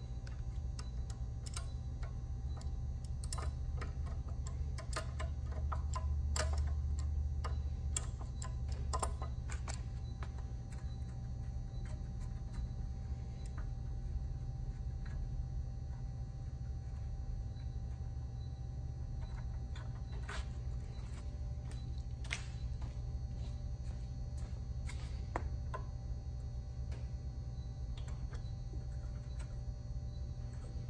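Irregular light metallic clicks and taps from an adjustable wrench loosening and removing the crankcase vent on an air-compressor pump, over a steady low hum.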